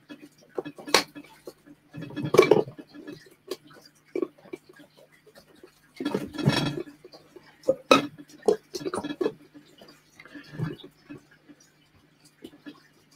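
Pieces of cork bark being set into a glass enclosure, knocking and scraping against the glass and substrate: scattered sharp clicks and knocks, with two longer rustling scrapes about two and six seconds in.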